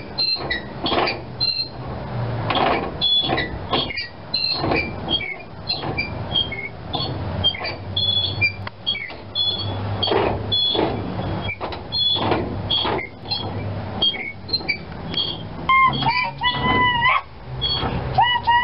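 Iron hand-brake wheel on a caboose being turned back and forth, with a run of clicks and clanks from the wheel, its ratchet and the linkage, and short high metallic pings. Near the end comes a high, wavering squeal.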